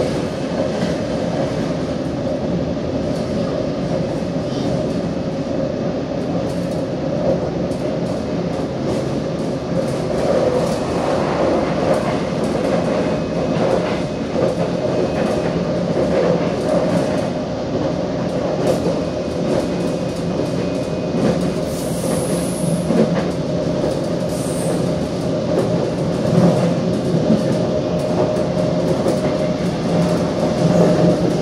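Cabin running noise of a Korail Nuriro electric multiple unit at speed: a steady rumble and hum with scattered clicks from the wheels on the track. Two short high squeals come about two-thirds of the way through.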